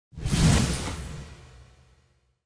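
Whoosh sound effect with a deep rumble under it, for a logo reveal: it swells in suddenly, peaks within half a second and fades away over the next second and a half.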